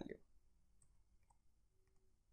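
Near silence with a few faint computer keyboard key clicks, spaced apart.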